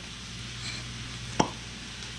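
A single sharp click about one and a half seconds in, as the plastic cap comes off a can of non-stick cooking spray, over the faint steady hiss of meat frying in a pan.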